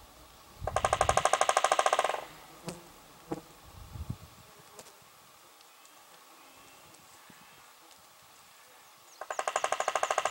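Woodpecker drumming on a dead tree: two rapid rolls of about a second and a half each, one about half a second in and one near the end, with a few single taps between them.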